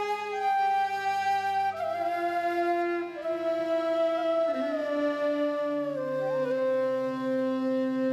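Two side-blown bamboo flutes playing a slow melody in long held notes that steps gradually downward in pitch.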